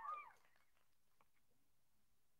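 Near silence: room tone, after the last faint trace of a man's voice fades out within the first half second.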